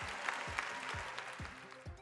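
Large seated audience applauding, the clapping dying away toward the end.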